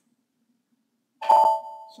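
A computer's notification chime: a single bright ding about a second in that rings and fades out quickly. It sounds as the status message confirming that the background job was scheduled comes up.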